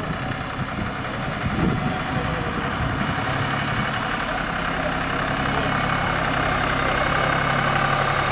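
Small farm tractor's engine running steadily as it pulls a loaded trailer, growing slowly louder as it comes closer.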